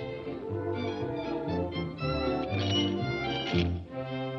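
Orchestral cartoon score playing an instrumental passage: sustained notes in several parts over a bass line that steps from note to note about twice a second.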